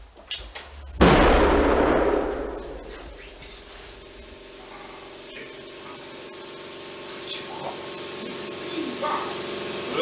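A paint-filled plastic bottle bursting under compressed air: a sudden loud bang about a second in, followed by a rush of escaping air and splattering paint that fades over about two seconds. A steady hum remains afterwards.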